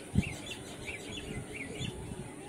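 A small bird chirping repeatedly, about three short calls a second, over steady background noise, with one low thump just after the start.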